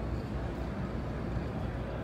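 Steady low rumble of background noise in a large exhibition hall, with no distinct events.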